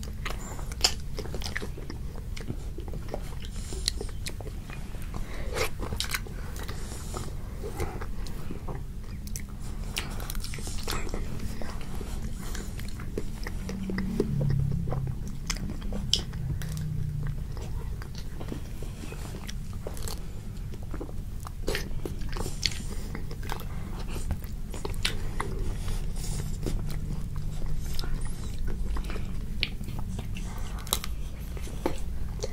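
Children biting through the crisp chocolate-and-almond coating of Hershey's ice bars and chewing, many short sharp crunches and clicks scattered throughout.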